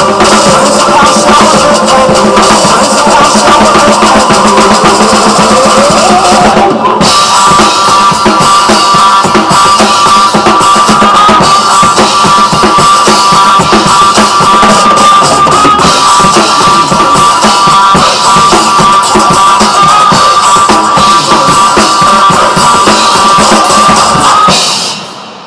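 Drum kit played live along to a loud rock backing track with guitar during an instrumental stretch of the song. About seven seconds in there is a brief break, then drums and track carry on under a held guitar line.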